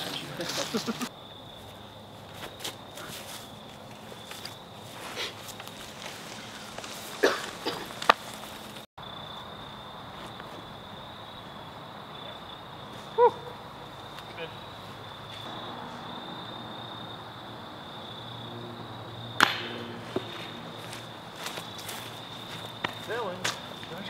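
Quiet outdoor ambience with a steady high-pitched drone, broken a few times by sharp metallic clanks of discs striking a chain disc golf basket, the loudest with a short ringing tail.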